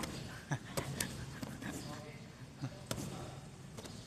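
A few dull thuds of gymnasts landing on padded crash mats and the gym floor. The loudest comes about half a second in, and two more come close together near the end.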